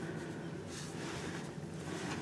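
Low steady room hiss with a faint, brief rustle of macrame cord being handled on a tabletop a little under a second in.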